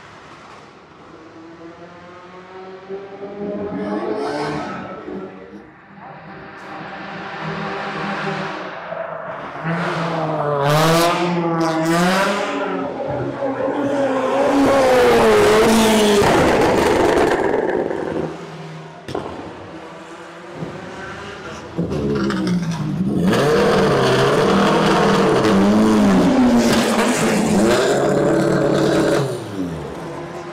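Race car engines going past on a circuit at night, several cars one after another, the engine pitch rising and falling with throttle and gear changes. Quieter for the first few seconds, loudest around the middle and again over much of the second half.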